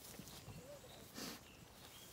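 Zwartbles sheep grazing close by, faint tearing and cropping of grass, with one louder crunch about a second in.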